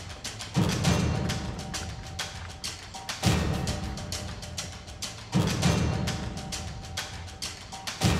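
Tense dramatic underscore: a deep drum hit about every two and a half seconds, each fading out, over fast ticking percussion and a faint held high note.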